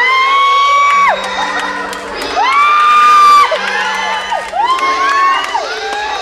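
A recorded song played for a lip-sync act: a very high voice holds three long notes, each sliding up into the note and dropping away at its end, over a soft accompaniment.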